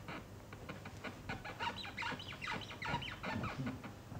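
Quick, irregular light clicks of table tennis bat and ball, mixed around the middle with clusters of short falling squeaks.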